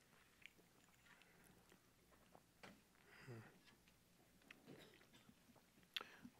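Near silence in a quiet room: scattered faint clicks and rustles of small communion cups being handled and drunk from, with a brief faint murmur about three seconds in and a sharper click at the very end.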